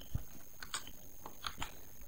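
About five faint computer mouse and keyboard clicks, irregularly spaced, over low steady background noise with a faint high-pitched tone.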